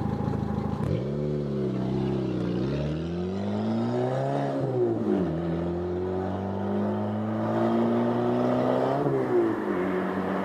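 A vehicle engine revving, its pitch climbing for a few seconds and dropping sharply about four and a half seconds in. It then runs steadily before a brief rise and fall near the end.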